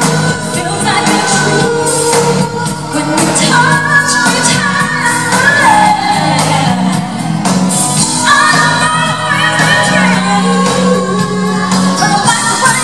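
Two female pop vocalists singing live over a band with keyboards and bass guitar, the voices gliding through runs across several notes.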